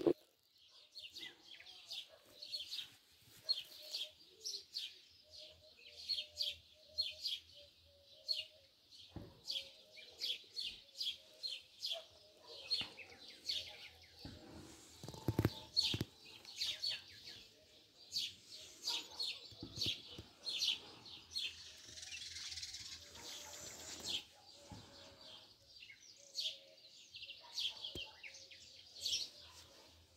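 Small birds chirping busily in the trees, a steady run of short, high chirps, with a few soft knocks in between.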